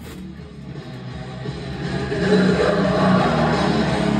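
Death metal with down-tuned distorted electric guitar, rising in level over the first two seconds and then steady and loud.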